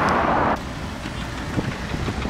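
Street noise of road traffic going by. It cuts off suddenly about half a second in, leaving a quieter low rumble.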